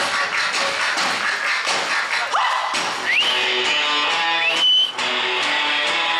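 Live band music led by electric guitar, with a few quick upward sliding notes around the middle and then sustained notes.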